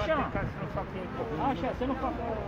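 Indistinct voices of people in a crowd talking, over a steady low rumble.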